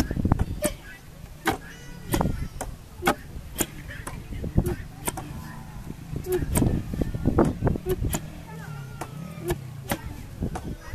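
Heavy wooden pestles thudding down into wooden mortars as white maize is pounded by hand, two pestles working out of step so the strokes fall unevenly, about one or two a second.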